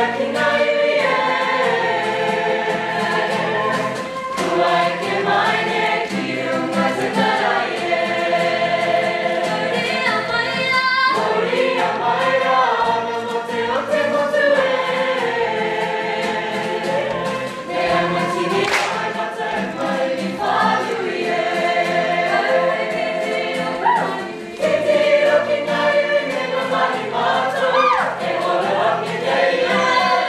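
Background music: a group of voices singing a Māori song, choir-like, with a short drop in level about three quarters of the way through.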